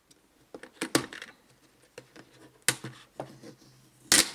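Plastic tear-off tabs on a plastic bucket lid being pulled up by hand: a few sharp plastic clicks and snaps, the loudest about a second in and near the end, with light handling between them.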